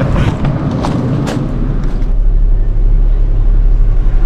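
Vehicle engine running, heard from inside the cab: a steady low drone that takes over about halfway through. Before it comes a rougher, noisy stretch with clicks.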